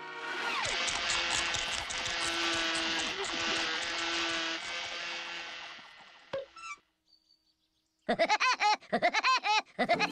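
Busy cartoon orchestral music cue that fades out about six seconds in, then a second of silence. Near the end comes Woody Woodpecker's rapid trademark laugh, a fast run of bouncing 'ha' notes.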